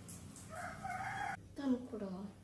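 A single drawn-out bird call, held at an even pitch for just under a second and cut off abruptly partway through. A voice follows near the end.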